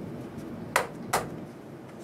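Two sharp taps a fraction of a second apart: the plastic test-well holder knocked down against the cardboard blotting pad to drive the last of the rinse water out of the wells.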